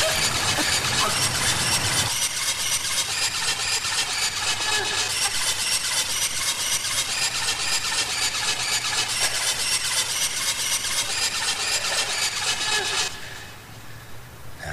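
Fast hardcore dance music playing through a DJ mix, with a rapid, driving beat. The bass drops out about two seconds in, and the music cuts off about a second before the end.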